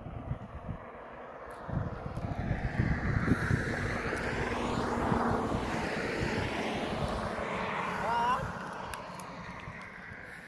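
A car approaching and passing close by, its engine and tyre noise swelling to a peak about five seconds in and then fading away. A brief wavering high cry comes near the end.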